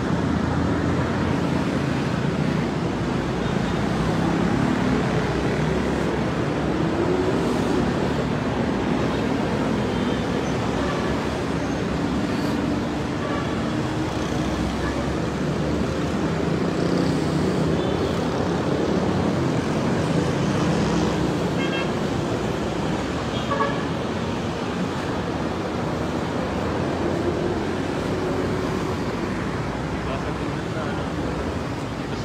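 Steady city street traffic noise with a murmur of distant voices, and a couple of brief car horn toots about three-quarters of the way through.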